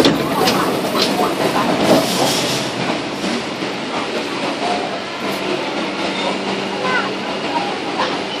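Interior of a CSR Nanjing Puzhen-built metro car standing at a platform: a steady hum from the train's onboard equipment with a busy rustle of passengers moving in the first few seconds. Faint voices come and go.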